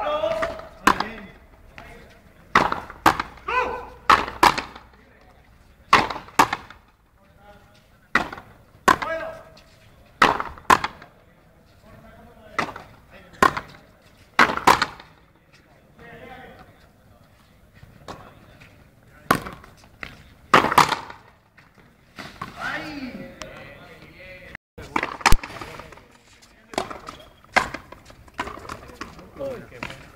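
Frontenis play: the rubber ball struck by rackets and hitting the fronton wall, a long irregular series of sharp cracks about one to two seconds apart. Brief voices are heard between some of the shots.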